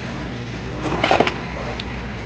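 A small ceramic item is lifted off a metal wire store shelf, with one short clatter about a second in, over a steady background hum in the shop.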